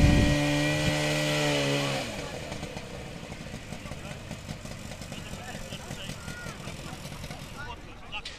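Portable fire-fighting motor pump engine running at steady high revs, then dropping slightly and cutting off about two seconds in, leaving faint voices.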